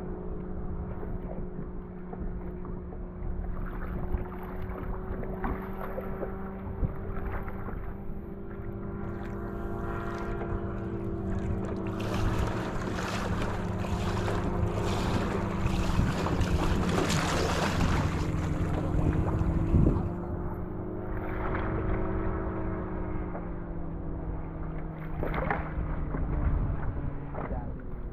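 Propeller engine of a small home-built light sport seaplane flying low over the water: a steady drone whose pitch bends up and down a little as it moves. Wind and water noise swell over it through the middle.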